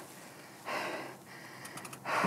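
A rider's single breath out after a hard time-trial effort, followed by a few faint clicks.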